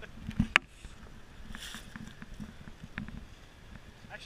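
Low, uneven rumble of a Toyota FJ Cruiser crawling over rocks, with one sharp knock about half a second in.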